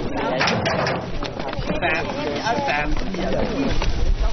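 Fishermen's voices talking on a fishing boat while the catch is sorted, over steady boat-side background sound.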